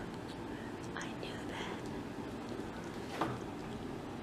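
Low room tone with faint murmured voices, a light click about a second in and a soft knock about three seconds in.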